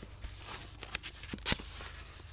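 Rustling and soft knocks of a paperback book being picked up and handled close to a microphone, with one sharper tap about a second and a half in.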